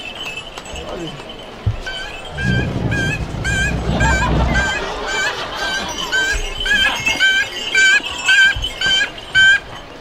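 Short honking notes blown over and over, about two or three a second, each with a little dip and rise in pitch. A low drum rumble runs under them from about two to five seconds in.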